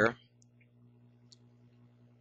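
A few faint clicks from a computer mouse's scroll wheel turning as a document is scrolled, over a low steady electrical hum.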